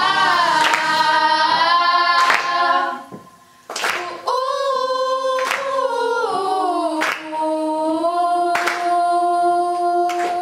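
Choir of young female voices singing unaccompanied, holding and sliding between long chords, with a sharp clap about every one and a half seconds. The singing breaks off about three seconds in and comes back under half a second later.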